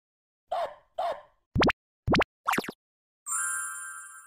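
Cartoon-style sound effects for an animated logo intro: two short plops, then quick rising pitch sweeps, then a bright shimmering chime that rings on and slowly fades as the logo appears.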